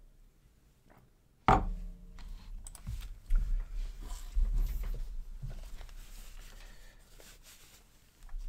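A ceramic mug set down on the desk with one sharp knock about a second and a half in, followed by a few seconds of softer bumps and rustling close to the microphone that fade out.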